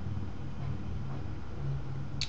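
Steady low hum with a faint even hiss: background noise of the recording setup, with no other event.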